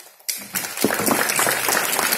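Audience applause: many hands clapping at once, a dense patter that starts suddenly about a third of a second in.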